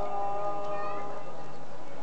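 A singing voice holds one long, steady note after a wavering melodic phrase, in the manner of melismatic chanting or devotional singing.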